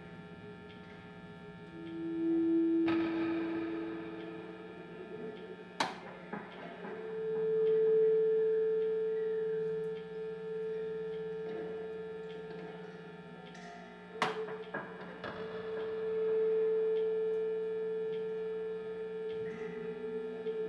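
Sparse experimental drone played on electric guitar and electronics: steady sustained tones over a constant low hum, with single held notes swelling up and fading away several times. Two sharp clicks cut in, about six and fourteen seconds in.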